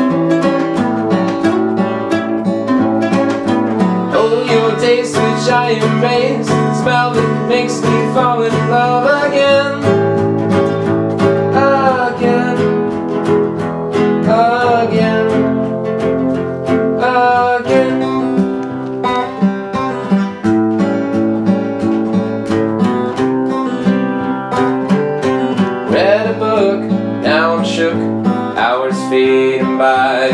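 A steel-string acoustic guitar and a nylon-string classical guitar playing together in an instrumental passage of a song, picked chords moving between notes.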